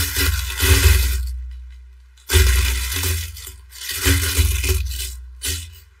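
Plastic wrapping crinkling and rustling in three or four loud bursts as clothes are handled, with a low thudding rumble of handling under it.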